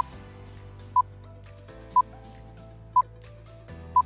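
Quiz countdown timer beeping, one short electronic tone each second, over soft background music.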